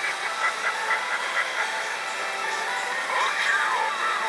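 Pachinko machine playing its electronic reach-effect music, a busy run of short bright tones with pitch glides about three seconds in, over the steady hiss of the parlour.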